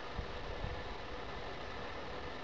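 Quiet outdoor ambience: a steady, even hiss at low level with no distinct source, broken only by a couple of faint small ticks.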